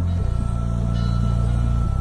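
Background music: deep, sustained bass notes that shift to a new chord just after the start and again near the end, over a faint steady higher tone.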